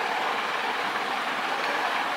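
Steady, even hiss of background noise with no other event.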